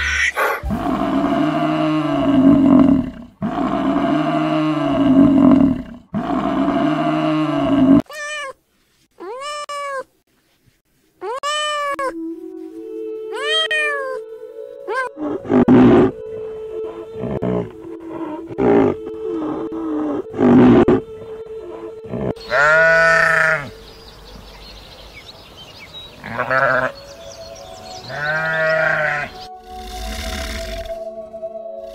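A series of animal calls: three long roars in the first eight seconds, then a run of short calls that rise and fall, and more calls near the end, over steady music tones.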